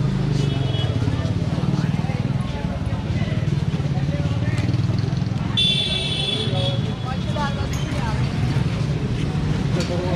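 Busy street ambience in a crowded market lane: passersby talking and motor vehicles running over a steady low rumble. About six seconds in, a high-pitched tone sounds for just over a second.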